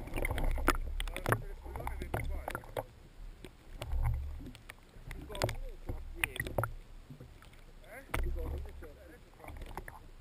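Sea water sloshing and bubbling around a camera held half-submerged at the surface, with low surges about a second long near the start, about four seconds in and about eight seconds in, and scattered sharp clicks and taps.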